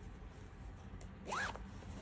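Zipper on a pants side pocket being pulled: a faint click about a second in, then one short zip.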